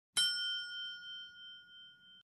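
Notification-bell 'ding' sound effect of a subscribe-button animation: one strike whose ring of several tones fades over about two seconds and then cuts off.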